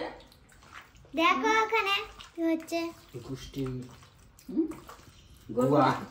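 Wet squelching of hands kneading marinated chicken pieces in a steel bowl, under a high-pitched voice making several short vocal sounds that the transcript does not pick up as words.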